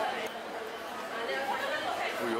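Indistinct chatter of several voices talking, with no clear words.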